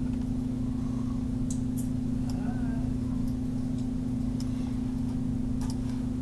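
Steady low electrical hum with a few faint scattered clicks, typical of a computer mouse being clicked while a selection is drawn.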